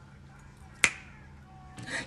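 A single sharp finger snap a little under a second in, over a faint steady background.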